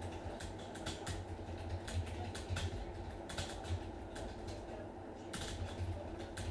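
Typing on a computer keyboard: irregular keystroke clicks, with a brief pause about four seconds in.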